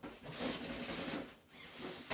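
A rustling, rubbing noise of something being handled, lasting about a second and a half, with a brief second rub near the end.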